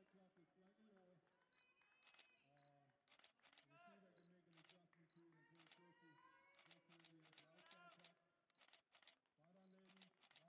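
Faint voices talking and calling out, heard from a distance.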